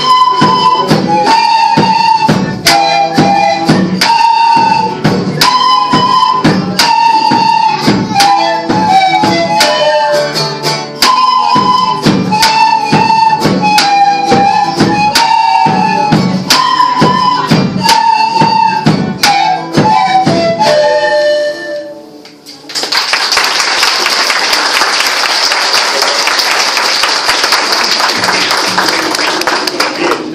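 Children's flute ensemble playing a traditional tune over a steady drum beat, ending on a falling final note about 21 seconds in. After a short pause, applause from a large audience.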